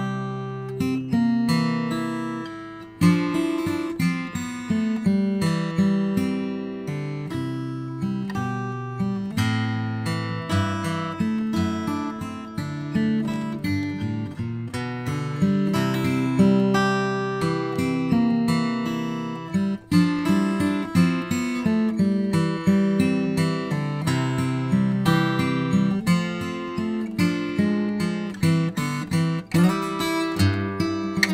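Steel-string acoustic guitar, a 12-fret 000 cutaway with a Western red cedar top and Honduran rosewood back and sides, played fingerstyle. It is a continuous solo piece of plucked melody over ringing bass notes, with a brief break in the playing about two-thirds of the way through.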